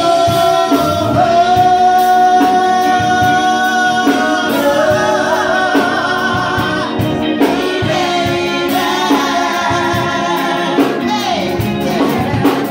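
A woman singing live into a microphone with a band, electric bass and keyboard under her. She holds long notes that waver and bend, and sings runs between them over regular beat hits.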